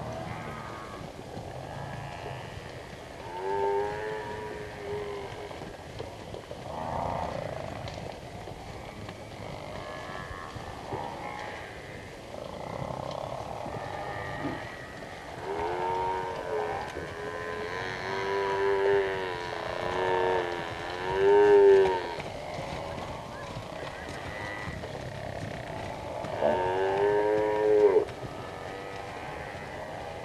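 African buffalo in a herd calling: a series of drawn-out, wavering, moo-like calls, about six in all, coming singly and in a cluster past the middle, over a faint steady background.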